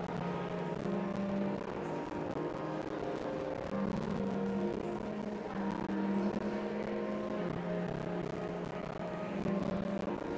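Church organ playing held low chords, the notes shifting every second or two.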